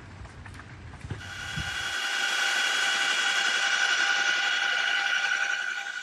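Faint rumble and a few crackles, then from about a second in the steady, high-pitched whine of a helicopter's turbine engine, several tones held evenly.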